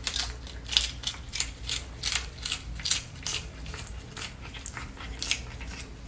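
A cat crunching a crisp lettuce leaf as it chews, in short, regular crunches of about three a second.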